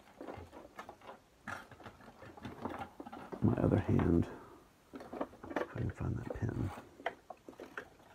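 Low, indistinct speech that the transcript did not catch, with a few small clicks from tools or thread being handled.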